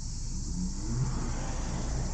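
A car engine accelerating, its pitch rising over about a second, heard from inside a car's cabin over a steady high hiss.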